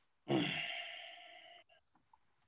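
A person sighing once into a microphone: a breathy out-breath that starts about a quarter second in and fades away over about a second and a half.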